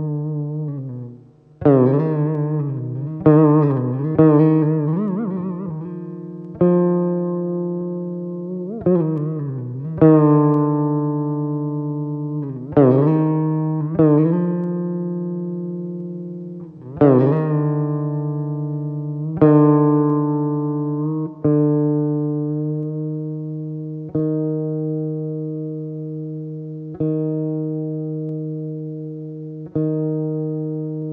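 Saraswati veena played solo. Plucked notes with wavering pitch bends fill the first few seconds, then single plucks come every two or three seconds, each ringing and slowly fading over a steady low drone.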